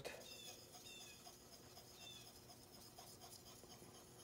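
Faint rubbing of a steel skew chisel stroked across a wet 8000-grit water stone, honing away the burr.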